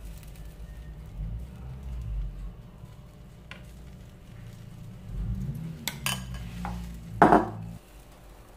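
Metal ladle scraping and tapping in a frying pan as a raw egg mixture is spread over a cooking cornmeal base, with a few sharp clinks, the loudest shortly before the end.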